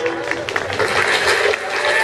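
An audience applauding right after dance music stops, with some chatter among the clapping.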